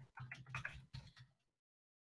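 Near silence: a few faint clicks over the first second or so, then the sound drops to dead silence.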